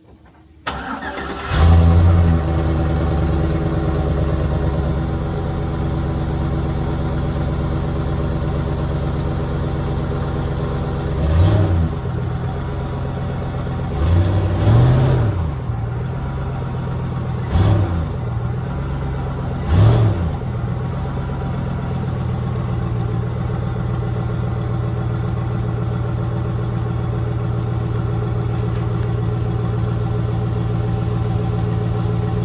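2005 Chevy Silverado's 5.3-litre V8 cranked and started through its stock factory muffler, catching with a brief flare, then idling steadily. It is revved four times in quick blips in the middle, dropping back to idle after each.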